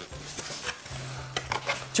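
Cardboard box being handled as an item is worked out of it: faint rustling with a few soft taps and scrapes, over a low steady hum.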